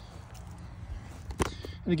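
Faint low outdoor background rumble with a single sharp click about one and a half seconds in, and a man starting to speak at the very end.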